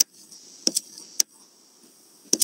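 Three short, sharp clicks in the first second and a bit, then a faint steady hiss.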